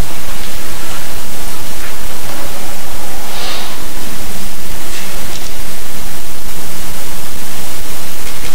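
Loud, steady hiss of electronic noise on the sound feed, filling the pause with no speech and no clear music.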